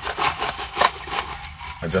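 Paper straw stirring a drink in a plastic cup: a quick run of scraping strokes, about five a second, that stops about a second and a half in.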